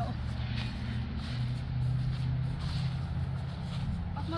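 Steady low hum like a distant engine or traffic, with faint soft strokes about every half second, like footsteps swishing on grass.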